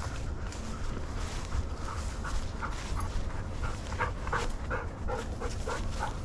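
A dog panting close by in quick short breaths, about three a second.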